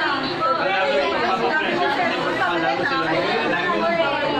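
Several people talking over one another at once: steady overlapping chatter of many voices.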